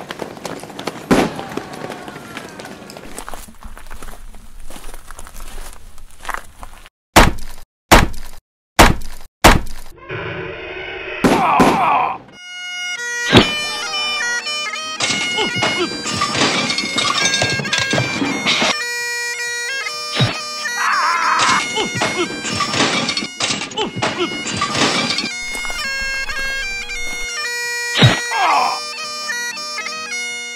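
A stretch of noisy clatter, then four loud bangs with short silences between, about seven to ten seconds in. From about twelve seconds Highland bagpipes play a tune over a steady drone, with a few sharp crashes over the music.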